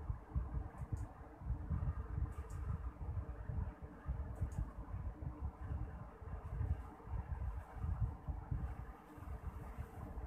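Low, uneven background rumble with a few faint clicks, and no speech.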